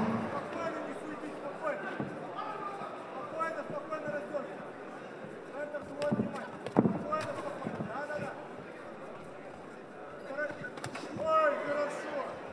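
Kickboxing strikes landing in the ring: three sharp smacks, two close together about six seconds in and one near eleven seconds. Scattered shouts from the crowd and the fighters' corners run throughout and are loudest near the end.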